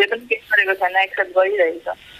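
Speech only: a person talking.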